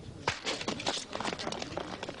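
Speed-skate blades striking and scraping natural ice in quick, irregular strokes as racers push off from the start.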